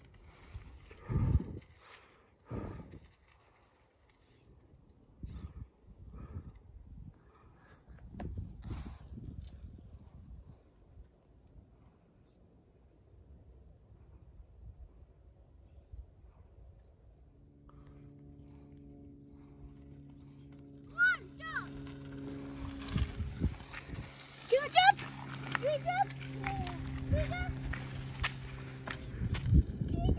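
Mountain bike rolling down a bumpy dirt trail, knocking and rattling over ruts. Past the middle a steady pitched buzz sets in, like a rear hub freewheeling on the descent, with short rising and falling calls over it.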